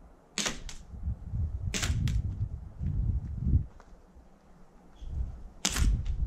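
Airsoft pistol shots, five sharp cracks: two quick pairs in the first two seconds and one more near the end. Low scuffing and handling noise runs between the shots.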